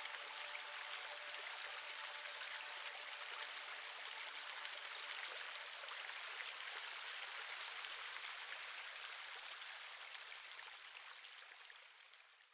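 Steady rush of flowing creek water, fading out over the last couple of seconds.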